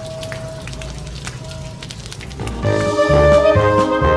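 Water from a hose spraying and splashing onto a car windshield. About two and a half seconds in, louder background music with brass instruments comes in over it.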